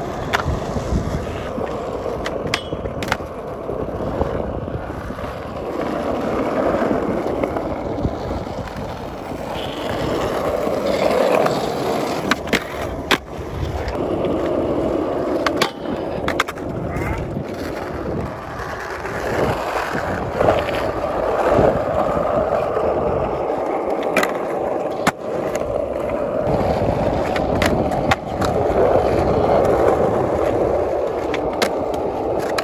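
Skateboards rolling on smooth concrete, with grinds and slides along a concrete ledge and a metal flat rail. Sharp clacks of tails popping and boards landing come at irregular intervals.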